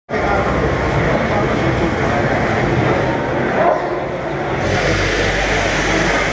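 Loud, steady noise of indistinct voices over a rumbling background in a large hall, with no single clear speaker.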